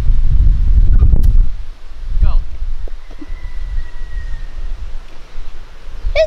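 A golf club strikes the ball once out of deep rough, a single sharp click about a second in, while wind buffets the microphone with a heavy rumble for the first second and a half.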